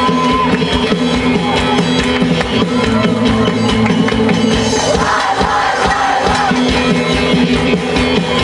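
Live band playing with a large choir singing along, loud and steady over a driving drum beat. The voices swell into a shout about five seconds in.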